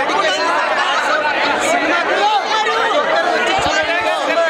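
Several men talking at once: one voice speaking into microphones over the chatter of a crowd pressed around him.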